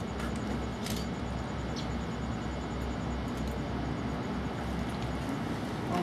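Steady low background rumble with a faint click about a second in.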